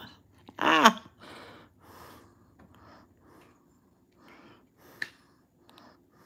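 A woman's short wordless vocal sound, falling in pitch, about a second in, then soft breathing through the rest, with one small sharp tick about five seconds in.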